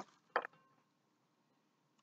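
Two short handling noises about a third of a second apart, near the start, as a ceramic coffee mug is picked up and moved.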